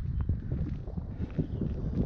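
Wind buffeting the microphone in a low, uneven rumble.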